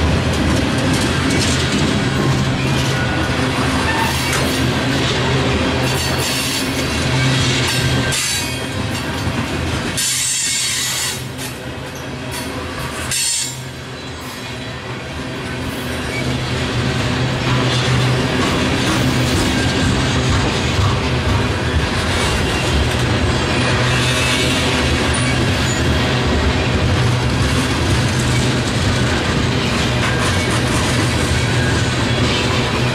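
Freight train of loaded tank cars rolling past, steel wheels clicking over the rail joints with some wheel squeal. The sound eases off a little for a few seconds near the middle.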